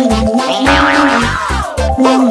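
Upbeat children's song backing music with a steady kick-drum beat and a sustained bass line, no singing. Around the middle a wavering, sliding cartoon sound effect rides over the music.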